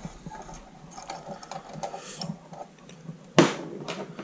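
Light ticking and scraping as the retaining nut on the wire-spool hub of a Parkside PSGS 120 A1 MIG welder is unscrewed by hand. There is one sharp knock about three and a half seconds in.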